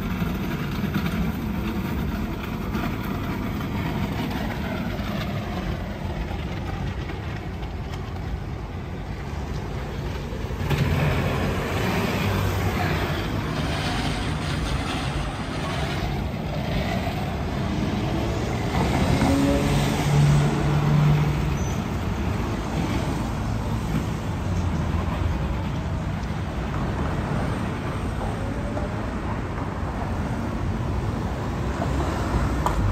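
Steady road traffic on a city street: vehicles passing, with a louder stretch with a low engine hum through the middle.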